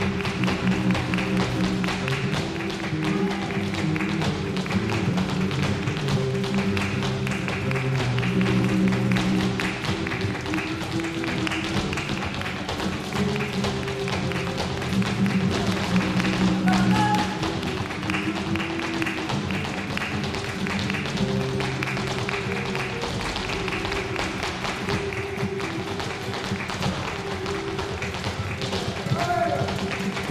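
Two flamenco guitars playing tientos, with rhythmic hand clapping (palmas) and the sharp taps of a flamenco dancer's footwork throughout.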